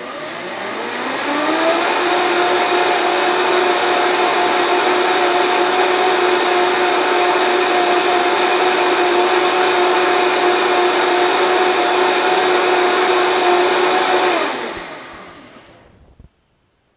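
Vitamix blender motor spinning up with a rising whine over about two seconds, running steadily at high speed through a batch of chocolate oat milk, then winding down with a falling pitch near the end.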